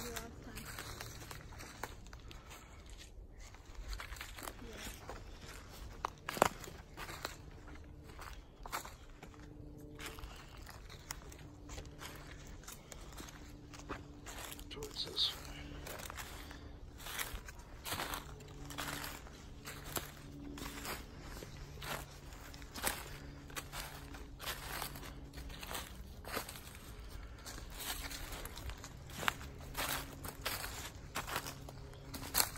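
Footsteps crunching through dry leaves, pine needles and twigs on a forest floor, an irregular step every fraction of a second, with one sharp crack about six seconds in. A faint low voice-like murmur runs underneath.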